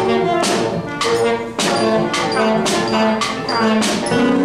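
A student band of brass and saxophone playing a tune, held notes over a steady beat of about two strikes a second.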